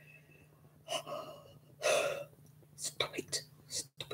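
A woman gasping in pain, twice about a second apart with the second louder, then a few short breathy, whispered sounds. They are her reaction to shooting nerve pains in her foot, which she takes for a side effect of her diabetes.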